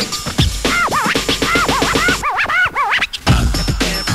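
Electronic dance music with turntable scratching cut over it: quick rising-and-falling scratch sweeps. The bass and drums drop out for about a second near the middle while the scratches go on, then the beat comes back.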